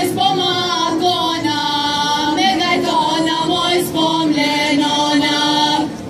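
A group of voices singing a Macedonian folk song, long held notes with gliding bends in pitch.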